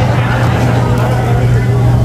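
A man's voice over a microphone and PA, holding one low, steady-pitched 'uhh' for about two seconds as a drawn-out hesitation between phrases.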